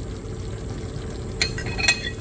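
Gravy simmering with a steady low bubble in a cast-iron skillet as meat juices are poured in from a glass bowl. Near the end come a few light glassy clinks, the bowl knocking as it is emptied.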